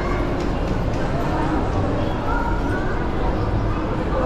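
Indistinct voices of people talking nearby over a steady, loud, noisy rumble of outdoor ambience.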